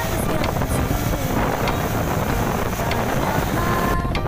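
Wind buffeting the microphone and road rush from riding in a moving open-sided vehicle, a steady loud rumble, with soft music faintly underneath.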